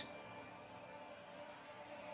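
Faint, steady background hiss with a low hum, the quiet bed of a trailer soundtrack between lines of dialogue.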